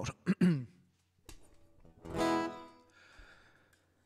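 A chord strummed on an acoustic guitar about two seconds in, ringing and fading out.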